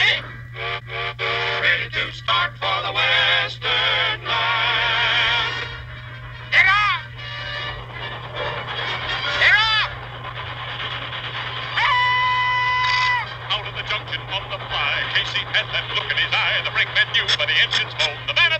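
Cartoon soundtrack music with sound effects. Two swooping whistle-like glides come first, then a steady whistle held for about a second around the middle, and a fast rhythmic patter builds near the end.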